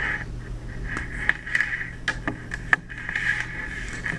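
Hand cutters snipping through a thin RCA audio cable: a few sharp clicks, two of them louder snaps, over a steady background hum.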